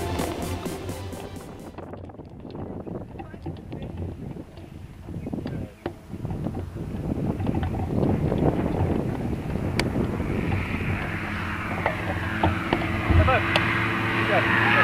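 Background music fades out about two seconds in. It gives way to wind on the microphone and the hang glider's control-bar wheels rolling and bumping over grass as it lands. A steady engine hum rises in the last few seconds.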